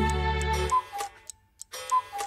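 A clock striking two: two short falling two-note chimes, about a second apart. They follow the end of a held musical chord.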